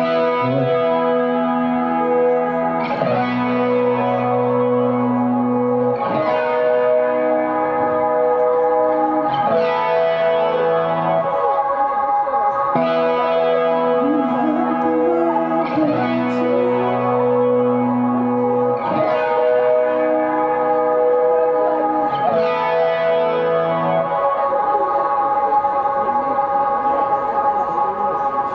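Slow instrumental intro of a slow-dance song: held, echoing chords that change about every three seconds, with no beat.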